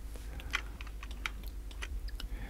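Computer mouse buttons and keyboard keys clicking at irregular intervals, over a low steady hum.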